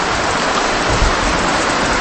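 A steady, loud hiss of noise like rain or rushing water, with no distinct events in it.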